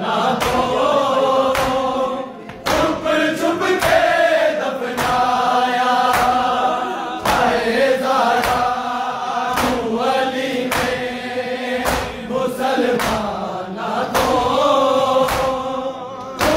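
Men's voices chanting a noha together, with a steady beat of sharp slaps, hands striking bare chests in matam, a little more than once a second.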